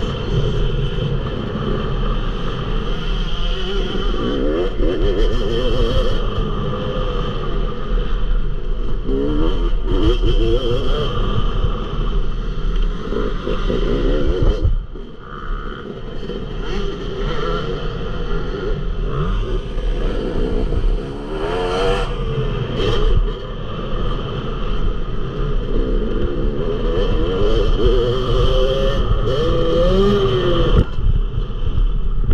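Yamaha YZ250 two-stroke motocross bike's engine revving hard through the gears, heard onboard, its pitch climbing again and again as the throttle opens. The engine drops off briefly about halfway through before pulling hard again.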